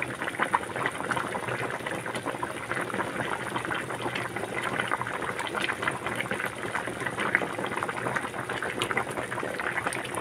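A pot of chicken soup with vegetables at a rolling boil: a steady, dense bubbling and popping of the broth.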